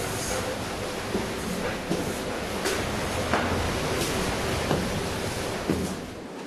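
Strong wind rushing over the microphone in a steady roar, with light footsteps on stone about every 0.7 seconds.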